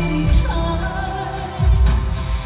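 A woman singing live into a microphone over music with a beat, heard through the hall's speakers, with a deep low thud in the music about a third of a second in and again near the end.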